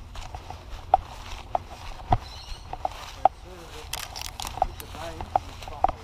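Footsteps of someone walking along a grassy dirt bush track, a soft step or crunch roughly every half second to second, over faint voices.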